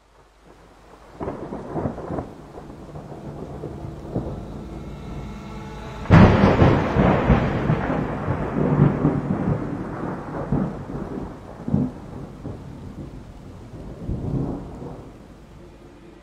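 Thunder: a low rumble builds, a sudden loud clap breaks about six seconds in, and the rumble rolls on and fades.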